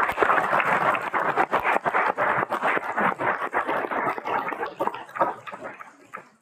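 Applause, many people clapping, dying away near the end.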